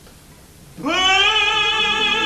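A pause, then about a second in an opera singer's voice enters, scooping upward into a long held note with vibrato.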